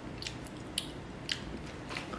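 A person eating close to the microphone from a plastic tub: chewing, with four short, sharp clicks about half a second apart from the mouth or the utensil against the tub.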